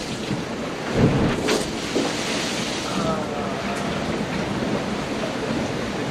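Rushing water and wind noise from a racing sailboat moving fast through a rough sea, heard from inside the cabin, with a heavy thump about a second in.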